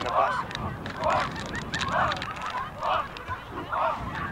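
Repeated honking calls, about one a second, each a short call that rises and falls in pitch.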